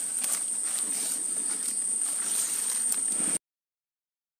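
Insects calling outdoors in one steady high note, with a few faint ticks, cutting off suddenly into total silence about three and a half seconds in.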